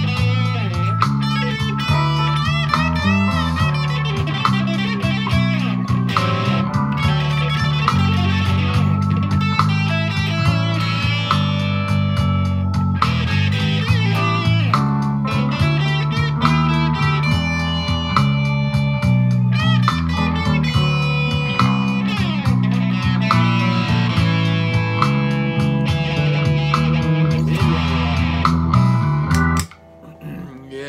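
Agile AL-3100MCC Les Paul-style electric guitar played through an amplifier: continuous picked lead lines and riffs, stopping just before the end.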